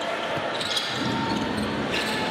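Basketball game on a hardwood court: a few sharp bounces of the ball over steady crowd noise in the arena.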